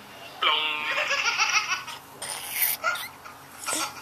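Baby laughing: a long, high, wavering laugh starting about half a second in, then a few short breathy bursts of laughter.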